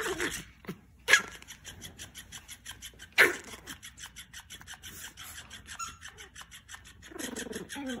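Pomeranians growling in a rapid, rasping run while tugging a plush toy, with two loud sharp barks about one and three seconds in, and a higher, wavering growl near the end.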